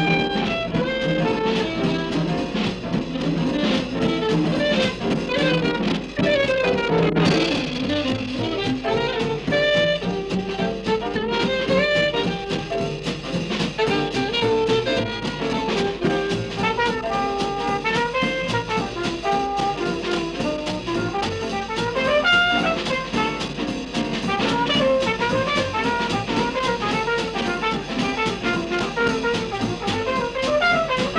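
Jazz band music with horns over a drum kit, playing steadily as background music.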